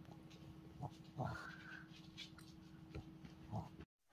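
A dog licking and sniffing at its empty dish after finishing its milk: faint wet licks and sniffs, the loudest a little over a second in. The sound cuts off suddenly just before the end.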